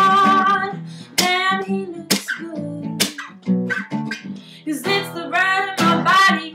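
Acoustic guitar strummed, with a woman singing along: her voice holds a long note at the start, drops back under the strums, and returns with a phrase near the end.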